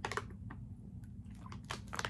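A man drinking from a plastic bottle: faint swallowing and mouth sounds with a few soft clicks as the bottle is handled and lowered.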